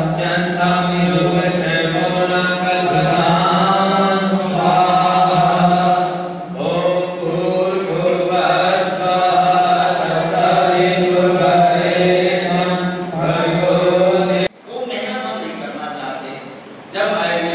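A group chanting Vedic mantras in unison with long held tones, over a steady low hum. The chant is cut off abruptly near the end.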